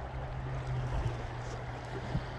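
A steady low hum over a low, uneven rumbling noise.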